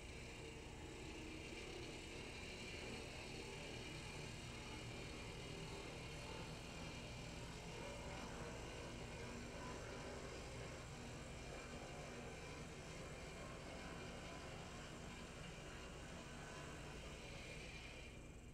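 HO-scale brass F7 A-B diesel model set running on the track: a faint, steady whir of its electric motor and gearing, with a thin, constant whine.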